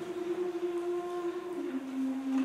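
A smooth sustained sung note that steps down to a lower held note about one and a half seconds in, part of a slow vocal line in a concert.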